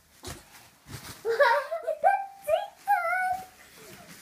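A young child's high-pitched wordless calls, several rising and falling wails in a row, after a soft thump on a mattress just after the start.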